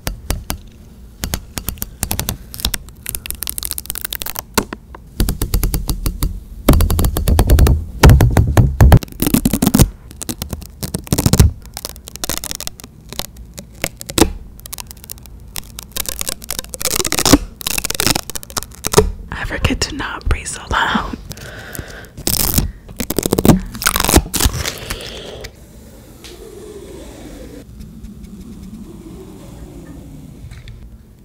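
Clear plastic sticky tape crinkling, sticking and peeling right against a microphone, heard as many close, sharp crackles and scrapes. The sounds thin out near the end.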